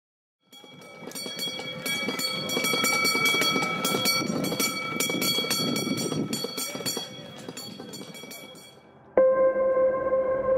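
Horse-drawn carriage going by: a dense clatter of hooves and wheels with steady ringing tones over it, swelling and then fading. About nine seconds in it gives way suddenly to ambient music holding a sustained note.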